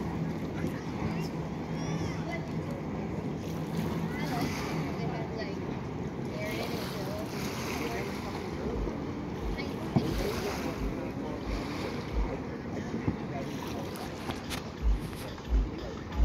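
Background chatter of people mixed with wind noise on the microphone, with a low steady hum in the first few seconds. In the second half comes a series of short low thuds, a few every couple of seconds, loudest near the end.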